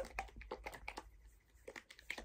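Faint, scattered small clicks and light rustles, like a plastic bottle being handled.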